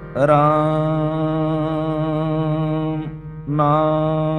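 Sikh devotional music (shabad kirtan): long held notes over a steady low drone. Each note glides up into pitch as it starts; the sound breaks off about three seconds in and resumes half a second later.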